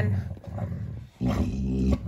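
A Dalmatian grumbling: two low, drawn-out grumbles, the second starting a little after a second in.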